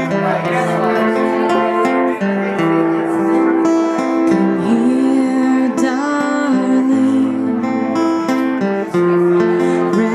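Live acoustic guitar music with long held notes. A woman's voice sings a gliding line in the middle.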